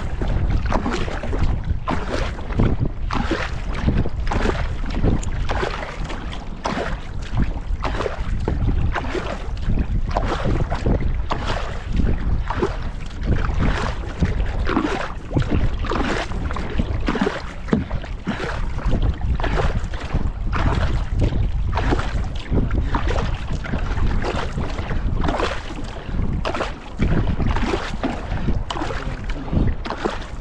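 Paddle strokes of a two-person outrigger canoe splashing in a steady rhythm about once a second, with water running along the hull. Wind buffets the microphone underneath.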